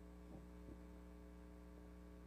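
Near silence with a steady electrical mains hum, and two faint soft knocks within the first second.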